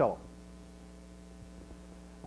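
A man's voice ends a word at the very start, then a pause holding only a faint, steady electrical hum.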